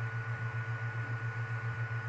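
A steady low hum that pulses about six times a second, with a thin steady tone above it and a faint hiss.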